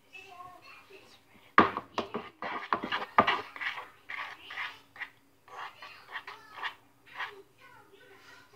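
Spoon stirring and scraping slime in a plastic bowl, with a run of sharp knocks against the bowl about a second and a half in, followed by irregular shorter scrapes.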